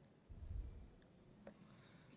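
Faint sound of a marker writing on a whiteboard: one short stroke about half a second in, then a faint click near the end.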